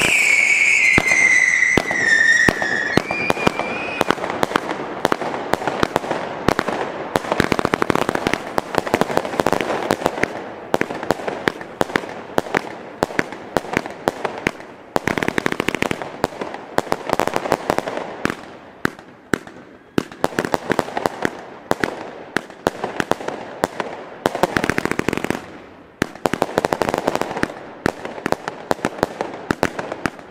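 Argento Hermes 20 mm compound firework battery firing at full power: a loud whistle falling in pitch over the first three seconds, then a dense, unbroken stream of shots and crackling bursts that swells and eases in waves every couple of seconds.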